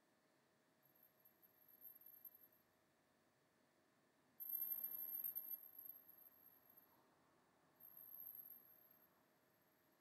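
Near silence: room tone with a faint, very high-pitched steady whine that comes and goes three times, strongest about halfway through.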